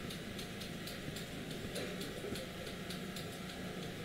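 Barber's scissors snipping, crisp uneven clicks about four a second, over a low steady hum in the shop.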